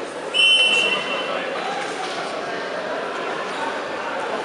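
A referee's whistle blown once, a short shrill blast of under a second, about a third of a second in, over the steady chatter of a crowd in a large sports hall.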